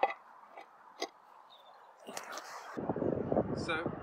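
A few faint knocks, then from about three seconds in a low, uneven rumble of wind buffeting the microphone.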